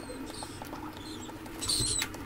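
Fast-forwarded handling noise from a plastic speaker housing being fitted together by hand. Taps and rubs are sped up into a quick run of small clicks and high, chirpy squeaks, with a louder squeaky patch near the end.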